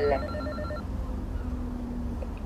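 Building door intercom calling: a pulsing electronic ring tone that stops a little under a second in.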